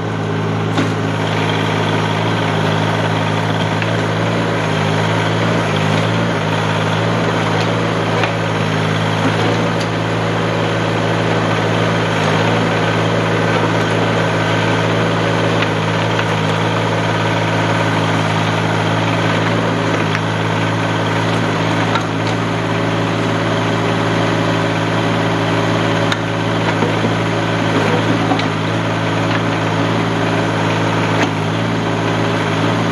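Compact tractor's engine running steadily while its hydraulic backhoe digs dirt around a tree stump.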